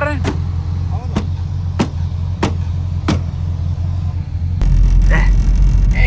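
A Jeep engine idling steadily with the hood open, its serpentine belt no longer chirping after being dressed with a home remedy; a sharp click sounds about every two-thirds of a second. Near the end a louder, deeper rumble of a vehicle driving takes over.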